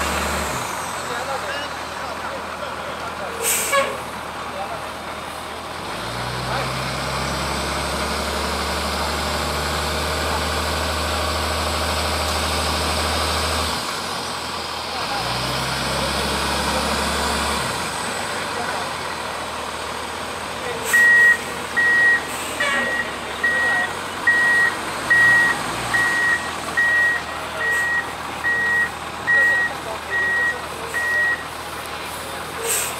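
Douglas aircraft tow tractor's engine running as it moves a Boeing 757-200, its low rumble rising for several seconds at a time and easing off again. From about two-thirds of the way in, a reversing alarm beeps steadily at a high pitch, a little over once a second, as the tug backs up.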